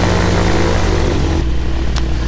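Flexwing microlight's engine and propeller running at taxiing power, a steady drone with wind noise on the microphone. About one and a half seconds in, the note drops as the throttle is eased back.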